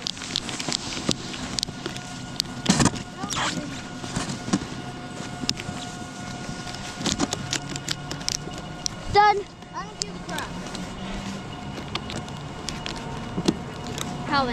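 Snowboard bindings being strapped in: ratchet straps clicking and buckles knocking in irregular bursts, with gloves and board scraping on snow. A short call from a voice comes about nine seconds in.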